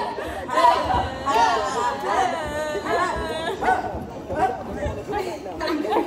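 Several young women's voices shouting and calling out over one another, excited group chatter.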